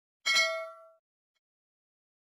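A single bright metallic ding, a bell-like chime struck once, that rings out and fades within about three quarters of a second.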